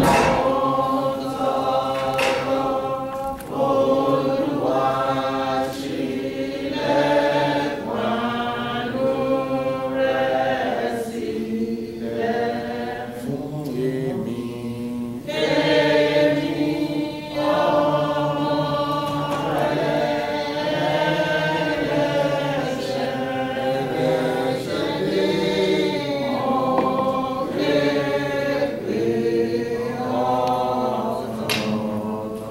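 A group of voices singing a church hymn together in long sung phrases.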